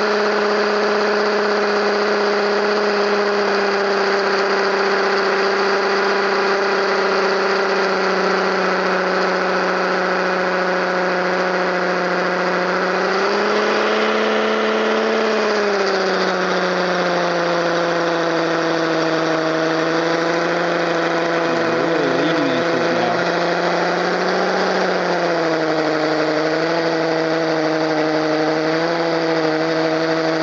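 Chicago Electric 18-volt cordless 1/2-inch hammer drill running non-stop under load, boring a masonry bit into a concrete block. Its motor whine slowly sags in pitch, with a short rise about halfway through, as the battery runs down.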